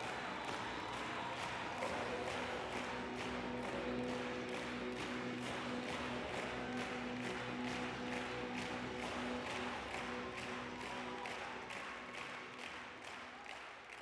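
Large audience applauding over music with a steady beat and held notes; the music and applause fade down near the end.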